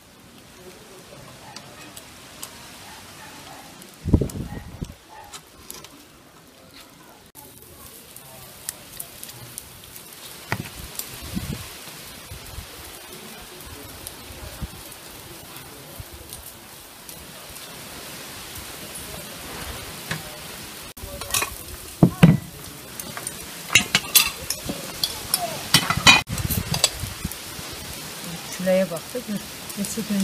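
Raw marinated meat being threaded onto metal kebab skewers: wet squelching of the meat and clicks of the steel skewer. There is a dull thump about four seconds in, and a run of sharp clicks and knocks over the second half.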